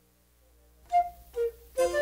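A flute is silent for about the first second, then plays two short separate notes, the second lower. Near the end the harpsichord comes in and plays with it.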